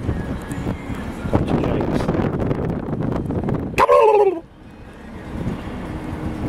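Vehicle running noise, then about four seconds in one loud, falling call: a man's imitation of a turkey gobble, calling to young turkeys that do not answer.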